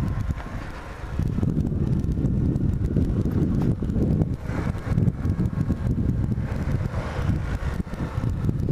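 A Bajaj Platina 100 motorcycle, a small single-cylinder four-stroke, riding along a street, with wind noise on the microphone. The sound dips for about the first second, then comes back louder.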